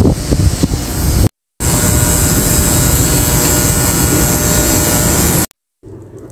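Steady street traffic noise with wind on the microphone. It breaks off in a short silence just over a second in, returns as an even, unbroken roar, and stops in a second silence near the end.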